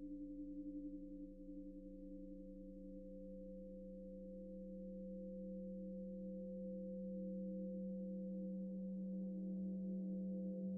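Several steady, pure electronic tones sounding together, one of them wavering and fading in the first couple of seconds while the whole chord slowly grows louder. The tones are tuned to the resonances of a particular room: an audible representation of that space's acoustics.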